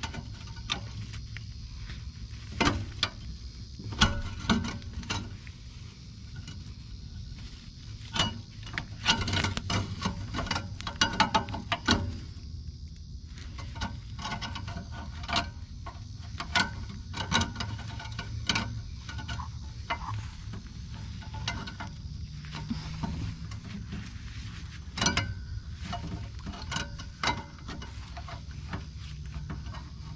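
Pliers snipping and working at barbed wire wrapped around the blade spindle of a Ventrac Tough Cut mower deck: irregular metal clicks, snaps and scrapes of wire against the deck, over a low steady hum.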